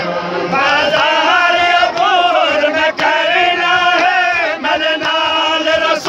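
Male voices chanting a noha (Shia lamentation) unaccompanied, a lead reciter holding long, wavering sung lines. Faint thumps come about once a second, in time with chest-beating (matam).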